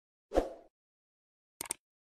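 Subscribe-animation sound effects: a short pop as the button graphic appears, then a quick double mouse click near the end as the cursor clicks the subscribe button.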